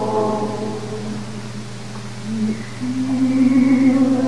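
A cantor singing a Jewish liturgical melody in a live concert recording. One long held note fades out in the first half, and a new held note begins a little after two seconds in, over a steady low drone.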